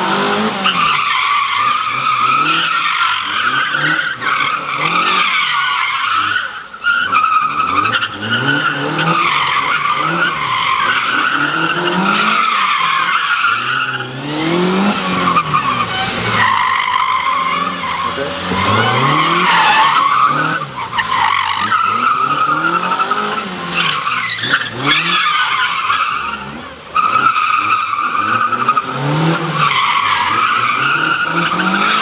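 Small hatchback autotest car driven hard: its engine repeatedly revs up and drops back as it accelerates and brakes between turns, with tyres squealing through the manoeuvres. The run briefly eases twice.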